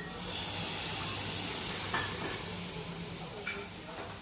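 A flambé on a hot teppanyaki griddle: the spirit flares up suddenly, then a loud hiss and sizzle slowly dies down.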